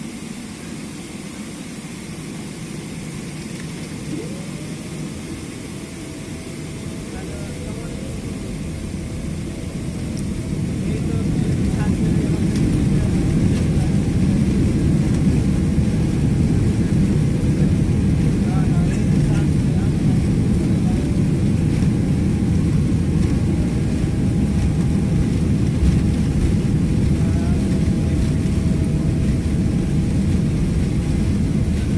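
Boeing 777-300ER's GE90 jet engines heard from inside the cabin, spooling up for takeoff. A deep rumble grows louder from about eight to twelve seconds in and then holds steady at takeoff power, with a faint whine rising about four seconds in.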